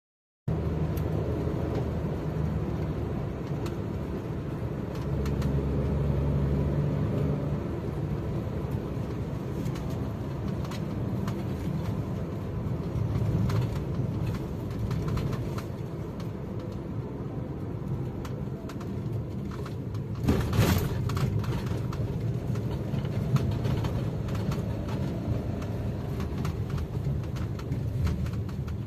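Steady low rumble of a car's engine and tyres on the road, heard from inside the cabin while driving. A short louder noise comes about twenty seconds in.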